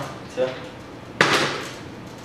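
A part-filled plastic water bottle thrown in a flip lands on a wooden table with one sharp knock about a second in and falls onto its side: a failed flip.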